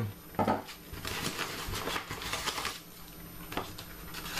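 Paper padded mailer rustling and crinkling as it is handled and a wrapped box is slid out of it, with a light knock near the end as the box lands on the wooden table.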